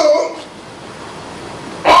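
A man's amplified voice calling out a short drawn-out word at the start, then a pause of about a second and a half with faint room noise, before speech resumes near the end.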